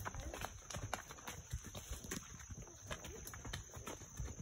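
Horses' hooves clopping at a walk on a dirt trail, an uneven run of about three hoofbeats a second.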